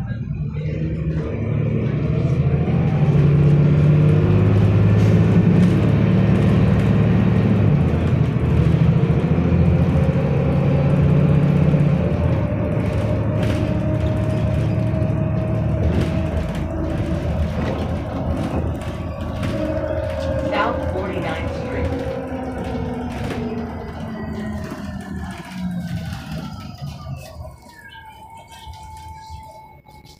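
Cummins ISL straight-six diesel and Voith 864.5 transmission of a 2008 Van Hool A300L transit bus, heard from on board. The engine pulls hard for about the first twelve seconds, then eases, while a whine rises and then falls in pitch. Near the end a higher whine glides down and the sound fades.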